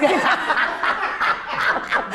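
A woman's breathy, stifled laughter: soft snickers in quick repeated pulses.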